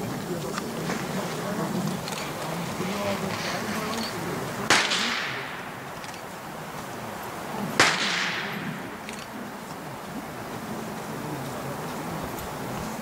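Two blank-pistol shots about three seconds apart, each a sharp crack with a trailing echo: the gunfire-indifference test fired during IPO off-leash heelwork.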